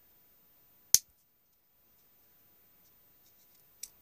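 A single sharp click about a second in, and a faint tick near the end, from a Leatherman Crater folding knife being worked in the hands.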